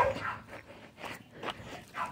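A young goat gives a short bleat right at the start. Faint rustling and footsteps on dirt follow.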